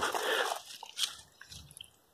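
Faint crisp rustling of brassica leaves being handled, with one sharp click about a second in.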